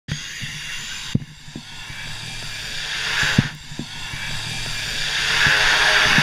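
Car driving on a road, heard from the camera inside behind the windscreen: a steady engine hum under tyre and wind noise, with a few sharp knocks from bumps, the loudest about a second in and just past three seconds.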